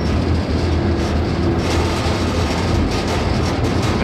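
Freight car rolling along the rails, heard from on board its end platform: a steady low rumble of the wheels with a faint clatter over it.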